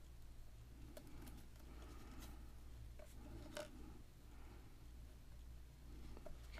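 Faint handling sounds of paper being pressed down by hand onto a glued collage panel, with a few light clicks, over a low steady hum.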